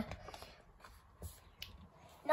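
A picture-book page being turned by hand: faint rustling of paper with a few soft ticks.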